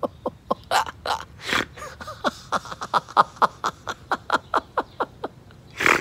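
A man laughing deliberately in a laughter-yoga exercise: a rapid run of 'ha ha ha' pulses, about five a second, each dropping in pitch. The run is broken by a few sharp, breathy gasps in the first second and a half and again near the end.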